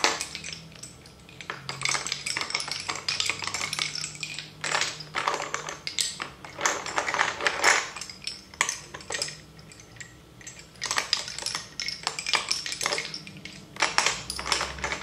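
Lace bobbins clacking against one another in quick, irregular clusters as pairs are crossed, twisted and pulled tight while working bobbin lace. There are short lulls about a second in and again around ten seconds in.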